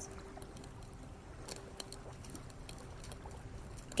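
Faint ambient soundscape of gentle lake water lapping, dotted with small irregular crackles of a campfire, over a faint steady tone.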